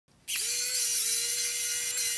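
Xiaomi Wowstick 1F+ electric precision screwdriver driving a screw: its small motor whirs with a steady high-pitched whine, spinning up about a quarter second in and then holding speed.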